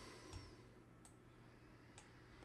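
Near silence with a few faint computer mouse clicks.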